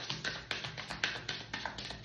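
A deck of tarot cards being shuffled by hand, a quick series of short taps and slaps as the cards strike each other.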